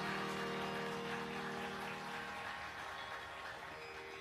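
Tanpura drone ringing on after the singing stops, its plucked strings slowly fading away.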